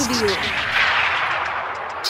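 A rushing burst of noise that swells and then fades over about two seconds, a crash or whoosh effect bridging from one song into the next.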